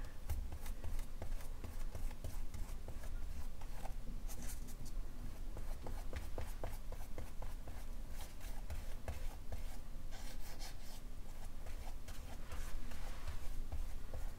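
Small flat paintbrush stroking gel matte medium over tissue paper glued to a journal page: a soft, scratchy brushing of bristles on paper, in many short strokes, over a low rumble.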